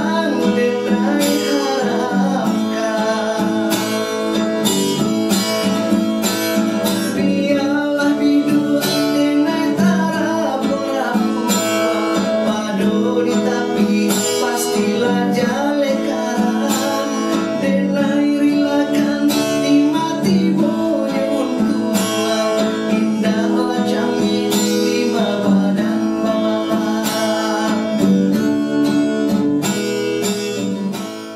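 A man singing to a strummed acoustic guitar, the guitar keeping up a steady strum beneath the voice. Near the end the singing stops and the guitar plays on alone.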